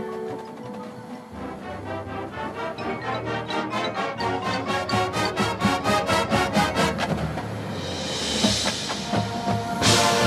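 High school marching band playing: held notes give way, about a second in, to a run of percussion strikes that come faster and faster, then a swell near the end and a loud full-band hit just before it ends.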